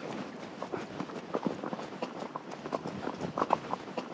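Hoofbeats of a ridden horse on a dirt and gravel track: a quick, uneven run of short knocks, several each second.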